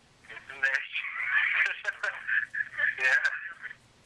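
Voicemail playing over an Android phone's loudspeaker: thin, telephone-quality voices, too jumbled to make out.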